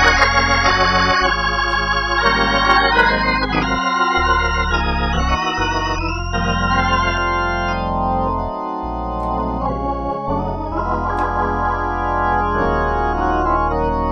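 Viscount Legend Hammond-style organ playing sustained gospel chords with bass pedal notes under them. The chords waver in a shimmering vibrato for the first half, then hold steady from about seven seconds in.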